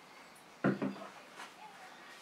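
A single sudden knock about two-thirds of a second in as a plastic infant car-seat carrier is set down on a small table, followed by a few fainter handling sounds.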